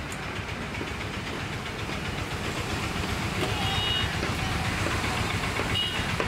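Road traffic noise, a steady rumble and hiss that grows louder about halfway through as vehicles pass. Two short high beeps sound, one about three and a half seconds in and one near the end.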